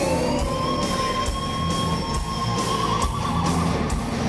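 Heavy metal lead singer's high scream sliding up and held for about two and a half seconds, wavering near the end, over a live band with drums and distorted guitars.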